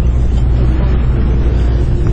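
Engine running steadily in the open air: a loud, even, low rumble with a faint hum above it.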